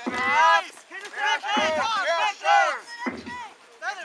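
Players and spectators shouting during Jugger play. A drum thumps about every one and a half seconds underneath, the Jugger timekeeper's 'stone' count.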